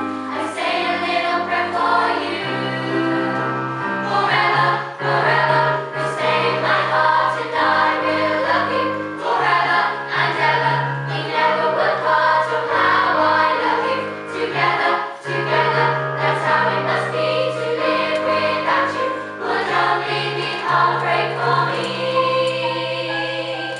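A girls' choir singing in parts with keyboard accompaniment: sustained low keyboard notes change every second or two under the voices.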